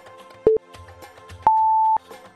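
Countdown beeps over background music: a short beep about half a second in, then a longer, higher-pitched beep about a second later marking the end of the count.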